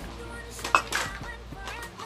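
Hard plastic toys clacking and rattling as a small child handles them, with a few sharp clacks, the loudest about three-quarters of a second in. Background music plays underneath.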